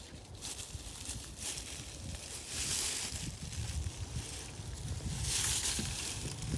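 Outdoor ambience: a low, uneven rumble of wind on the microphone, with two short rushes of hiss, about two and a half and five seconds in.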